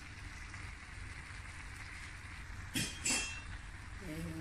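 Stir-fried vegetables sizzling faintly in a metal pot. Two sharp clinks of a utensil against the pot ring out close together a little under three seconds in.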